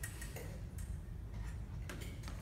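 A few faint, light clicks and taps from a slow fencing drill, the sharpest one near the end, over a low steady hum of the hall.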